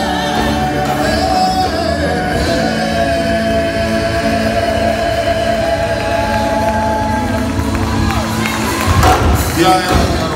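Live male gospel group singing with electric guitar and drums, a lead voice holding long notes over the group's harmony. Near the end, a louder burst of shouting from the crowd.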